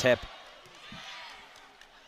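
Faint arena crowd noise at a volleyball match, with one soft knock about a second in, after a commentator's last word at the very start.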